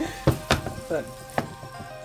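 Linguine in a creamy sauce sizzling in a skillet as it is tossed with tongs, with three sharp clicks of the tongs against the pan.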